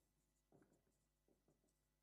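Near silence, with a few very faint strokes of a marker on a whiteboard.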